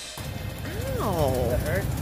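A person's voice calling out in long sliding tones, rising and then falling, starting about half a second in, over a low steady rumble.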